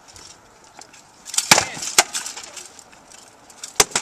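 Rattan swords striking wooden shields and armour in SCA heavy combat: a few sharp wooden cracks, a quick cluster about a third of the way in, another just after, and a single loud crack near the end.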